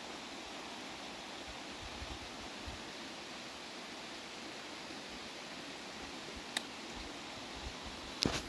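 Steady hiss of running water from a mountain creek and springs, with one faint click about six and a half seconds in.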